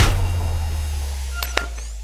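Logo-intro sound effect: the tail of a deep bass boom slowly fading away, with two small high ticks about a second and a half in.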